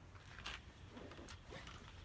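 Near silence: faint outdoor background with a few soft clicks, about half a second in and again around the middle, as a plastic ball is taken out of a plastic laundry basket.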